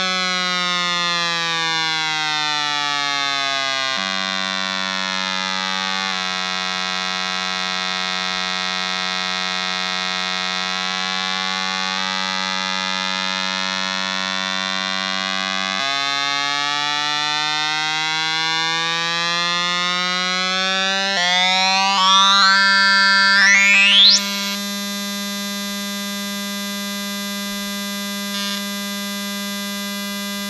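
An 8-ohm speaker driven by a 555 timer oscillator, giving a square-wave tone with many harmonics whose pitch slides down and back up as the potentiometer is turned. Near the end the pitch sweeps sharply upward, then the tone holds steady and a little quieter.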